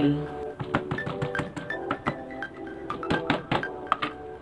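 Background music with a melody. Over it, a kitchen knife knocks irregularly on a plastic cutting board as a garlic clove is chopped and crushed, with a few stronger knocks near the end.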